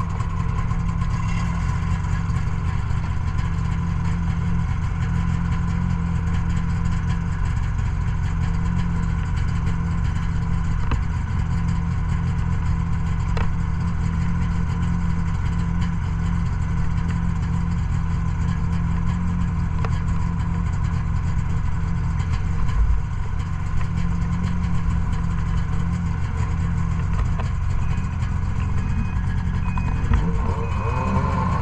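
Ski-Doo snowmobile engine idling steadily close by, with no change in revs.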